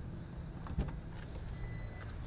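A 2016 Jeep Grand Cherokee's electric tailgate being released: a faint click about a second in, then a thin steady beep near the end as the power tailgate starts to open, over a low steady hum.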